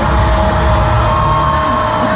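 Music playing over a stadium's loudspeakers with a crowd cheering, and one long held note that slides up into place at the start.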